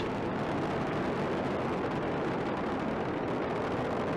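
Space Shuttle rocket engines roaring during ascent, the solid rocket boosters and main engines at full thrust: a steady, dense rumbling noise with no breaks.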